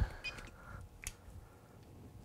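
Quiet handling of 12-gauge wire in a cordless screwdriver's built-in wire stripper: faint rustling with a small click about a second in.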